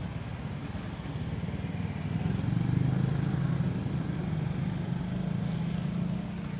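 A motor vehicle's engine running, a steady low hum that grows louder about two seconds in and then eases slightly.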